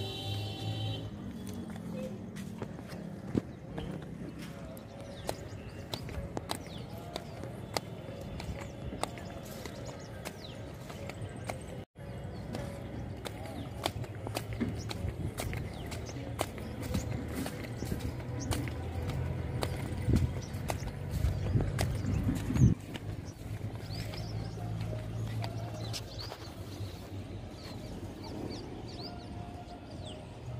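Footsteps on the stones and sleepers of a railway track, heard as many irregular short clicks, with music playing faintly in the background.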